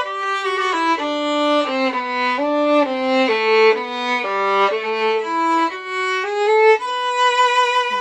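Solo violin, bowed, playing a single-line melody of short notes that step down and back up, ending on a long held note near the end.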